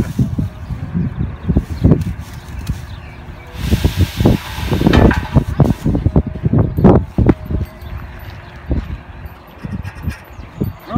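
Wind buffeting the microphone, with a rustling, scraping hiss from about four to six seconds in as a pine tree is dragged through a tree baler's metal funnel and into netting.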